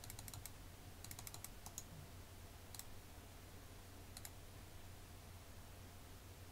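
Faint computer keyboard and mouse clicks as a footprint is pasted into a resistor's properties: a few scattered single clicks and a quick run of keystrokes about a second in, over a faint low hum.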